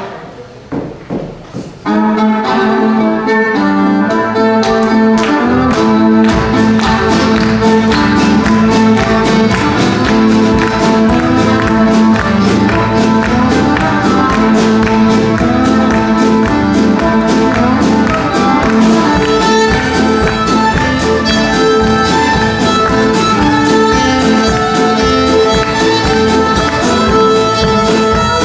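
Fast fiddle tune played live, the fiddle leading over a drum kit and bass guitar. After a brief quieter start the full band comes in about two seconds in, with a steady driving drum beat.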